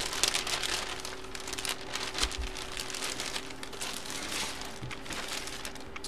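Plastic bag crinkling and rustling continuously as a jersey is handled and packed into it.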